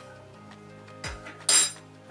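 Metal teaspoon clinking as yeast nutrient is spooned into a funnel in a glass demijohn: a soft knock about a second in, then one sharp, ringing clink about a second and a half in. Background music plays throughout.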